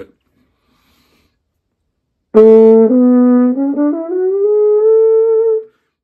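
Trombone played through a bucket mute with a rag stuffed inside to calm its bright tone. After about two seconds of silence it plays a short low note and a note a step higher, then slides up to a note an octave above and holds it for about two seconds.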